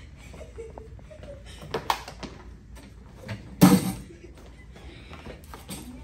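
Scattered light knocks and shuffling of classroom furniture as people sit down at a table, with one louder thump about three and a half seconds in.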